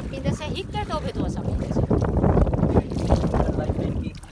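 Water in a shallow muddy pond splashing and sloshing as a hand works in it and a pot is dipped in. Wind rumbles on the microphone throughout, and a voice is heard briefly in the first second.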